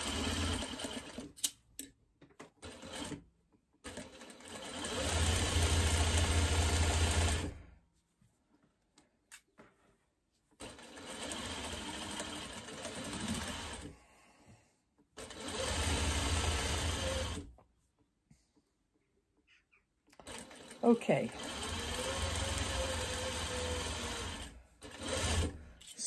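Juki single-needle sewing machine stitching a seam in about five separate runs of a few seconds each, stopping and starting between them. The longest and loudest run comes about four seconds in, speeding up and then holding steady.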